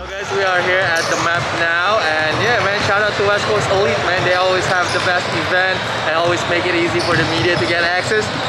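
Indoor basketball gym ambience: basketballs bouncing on the hardwood court amid steady, overlapping crowd chatter.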